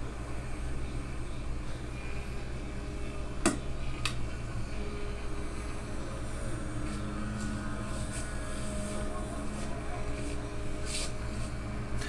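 Steady low hum with a faint drone from a radio-controlled model plane's motor, heard through computer speakers playing back the flight video and re-recorded; the drone's pitch shifts a little in the second half. Two short clicks about three and a half and four seconds in.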